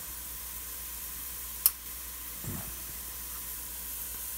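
Chopped onion and garlic frying in oil in a stainless steel pot, a steady sizzle. About a second and a half in there is a single sharp click, the loudest sound here.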